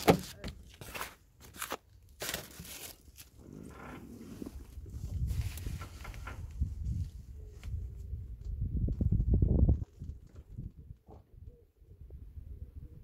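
Wind buffeting the microphone in low gusts that build from about four seconds in and are loudest just before ten seconds, then drop away suddenly. A few sharp clicks and knocks come in the first two seconds.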